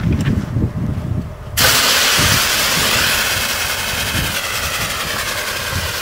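Portable liquid oxygen unit venting liquid oxygen: a loud, steady hiss that starts suddenly about one and a half seconds in, as the liquid sprays out and boils off into vapour.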